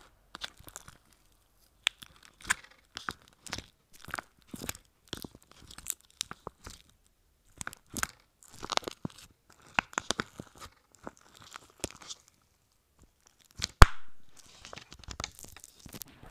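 Fingers kneading and squishing thick slime studded with sprinkles in a plastic tub, making irregular sticky pops, clicks and crackles. One louder pop comes near the end.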